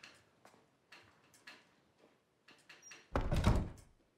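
A few faint knocks about every half second, then a wooden door shutting with a loud thud and short rattle near the end.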